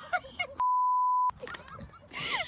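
A censor bleep: one steady, pure beep lasting about three-quarters of a second, starting a little over half a second in, which replaces the sound entirely while it plays. A woman's voice is heard briefly before and after it.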